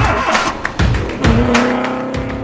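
A car engine starts and revs, settling into a steady engine note a little past a second in, laid over a music track with a beat.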